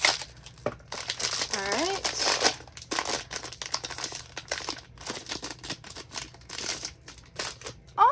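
Foil blind-box bag crinkling in the hands as it is handled and opened: a continuous run of sharp, crackly crinkles.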